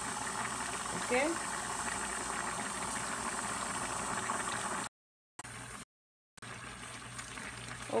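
Black beans and their cooking liquid boiling hard in a large aluminium pot, a steady bubbling. The sound cuts out completely twice, briefly, about five to six seconds in.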